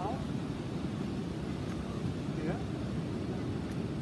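Steady low rumble of wind buffeting the microphone, with a short spoken word near the start and another about halfway through.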